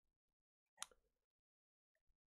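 Near silence, broken once, about a second in, by a single short click.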